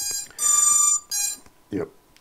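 An FPV quadcopter beeping as its flight controller reboots: three electronic beeps in quick succession, each at a different pitch, the middle one longest and loudest.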